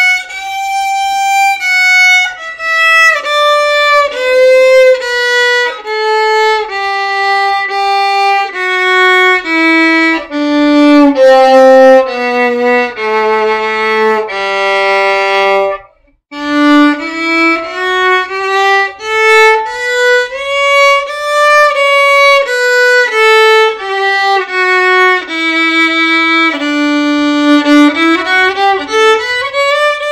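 Stefan Petrov Workshop model violin bowed one note at a time. It plays the descending half of a two-octave G major scale down to the low G, then, after a short break, a D major scale up one octave and back down.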